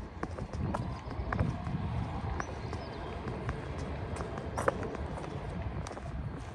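Footsteps on stone paving: irregular hard clicks over a steady low city rumble, with the sharpest click about three quarters of the way through.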